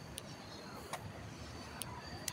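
Faint outdoor street ambience: a low rumble of distant car traffic with a few light clicks.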